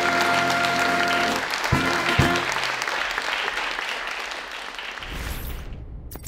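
Background music holding a sustained chord that ends about two seconds in, under audience applause that gradually fades away toward the end.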